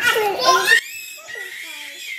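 Small children vocalizing without words: a loud, high-pitched burst of toddler voice in the first second, then softer babbling.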